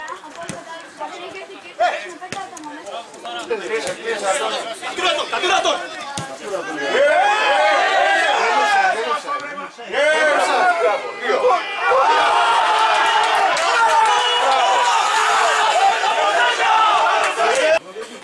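Many voices of football players and sideline spectators shouting and calling over one another during an amateur match. The shouting swells about seven seconds in and again from about twelve seconds, staying loud until it cuts off abruptly just before the end.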